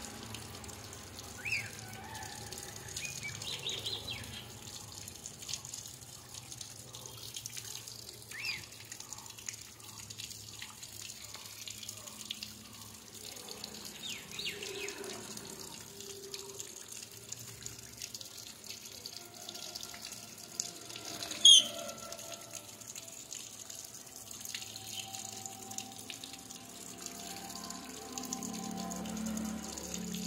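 Water trickling and splashing from a bottle sprinkler into a parrot's cage, giving the bird a shower. A few short high chirps come through, the loudest a sharp one about two-thirds of the way through.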